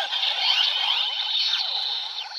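Electronic sound effects from a DX Kamen Rider Build toy's speaker: overlapping swooping, echoing synthetic tones that fade a little near the end.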